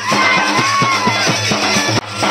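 Procession band music: drums, including a bass drum, beating a quick steady rhythm of about five strokes a second, with a brass horn playing a melody that bends up and down over it.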